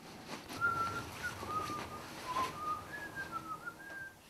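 A person whistling a slow tune: a string of held notes stepping down and up again, over faint background noise.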